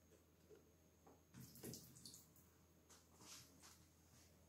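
Faint trickle and drips of water poured from a plastic jug onto a sheet of paper held over a glass, otherwise near silence.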